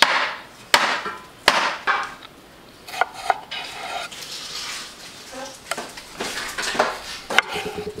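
Kitchen knife slicing tomatoes on a wooden cutting board, the blade knocking on the board in sharp, irregular strikes.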